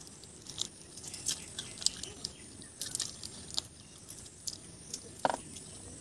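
People chewing food close to the microphone, with irregular short crunches and mouth clicks.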